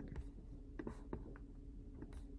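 A few faint clicks from a computer mouse being clicked and dragged, over a low steady hum.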